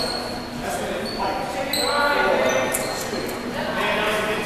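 Voices talking and calling out in an echoing gymnasium, with several short, high squeaks of sneakers on the hardwood court.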